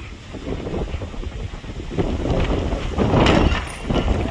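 Wind buffeting the microphone in a steady low rumble. About three seconds in comes a louder rush of noise with a few sharp knocks at its start: something nearby falling.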